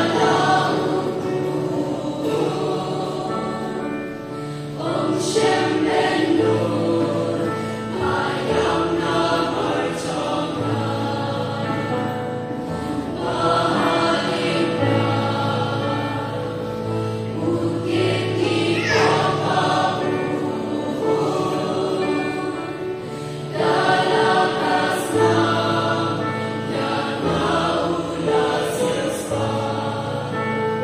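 A choir of mostly women's and girls' voices singing in harmony into stage microphones. Long held phrases swell and change every few seconds over a sustained low part.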